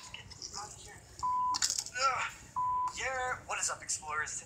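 A man talking in a YouTube vlog, played through the Sharp Aquos Crystal smartphone's loudspeaker at full volume. Two short, steady beeps at one pitch cut in between his words, about a second in and again about a second later.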